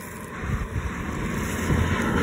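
Red Chevrolet Silverado pickup truck approaching on an asphalt road, its tyre and engine noise growing steadily louder as it nears.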